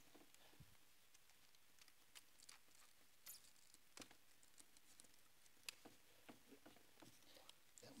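Faint, scattered small clicks and crackles of sticky tape being pulled off and pressed down on paper cut-outs on a board.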